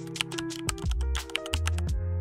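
Keyboard-typing sound effect, a quick irregular run of clicks as on-screen text is typed out, over background music with sustained bass notes.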